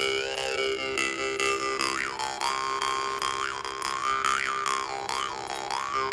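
Mohan Dream State bass jaw harp played with rapid, even plucks: a steady low drone, with its overtones swooping up and down again and again as the player shapes his mouth.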